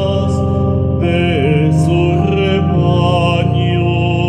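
A man singing a hymn solo while accompanying himself with held chords on a keyboard.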